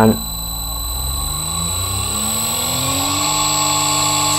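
Three-phase induction motor on a Lenze SMD variable-frequency drive speeding up as the output frequency is stepped up to 50 Hz: its hum rises in pitch for about two seconds, then runs steady.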